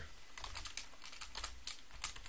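Computer keyboard being typed on: a run of quick, faint keystrokes.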